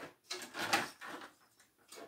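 Handling noises at a workbench: a wooden chair-arm blank being set down and slid across the bench, a few short scrapes and rustles in the first second, with light knocks at the start and near the end.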